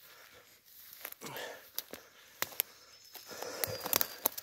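Footsteps through forest undergrowth: rustling grass and leaf litter with a scatter of sharp little snaps and cracks from twigs underfoot, coming thicker in the second half.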